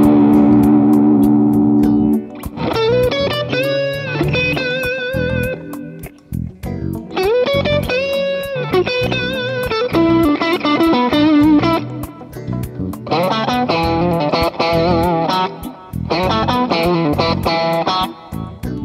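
Electric guitar with Fender CS69 Stratocaster pickups played through an overdrive pedal into a 1974 Fender Deluxe Reverb amp, miked on its Celestion G12H-30 speaker: a held chord, then overdriven lead phrases with string bends and vibrato, broken by short pauses. The Fulltone Full-Drive overdrive is switched on by about halfway through.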